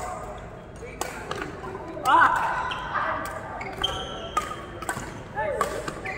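A badminton rally: a string of sharp racket hits on the shuttlecock, irregularly spaced, with short squeaks of court shoes on the mat, and voices in the background.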